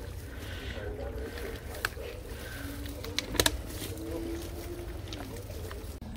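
Faint voices over a steady low rumble, with a few sharp clicks, the loudest about three and a half seconds in.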